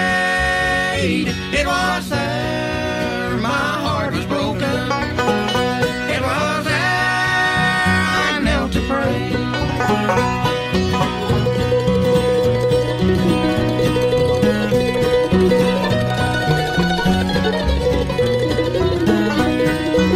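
Acoustic bluegrass band playing live, with banjo, mandolin, guitar and bass. Singing runs through roughly the first half, and the band carries on instrumentally after it.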